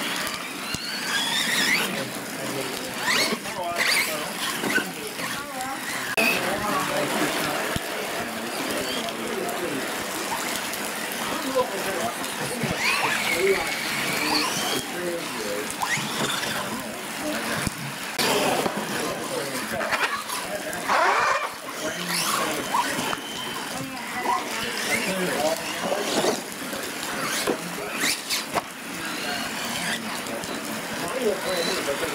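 Radio-controlled monster trucks' electric motors whining and revving up and down as the trucks drive through wet mud, with scattered knocks from the trucks.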